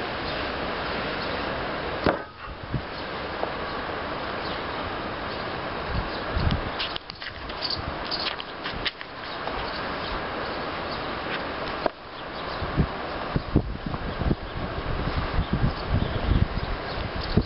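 Cherusker Anduranz folding knife stabbing into and slicing through the pages of a paperback book on a wooden table: paper cutting and rustling with scattered knocks of blade and book on the wood, a cluster of quick knocks near the end. The cutting goes through but not easily. A steady outdoor rush runs underneath.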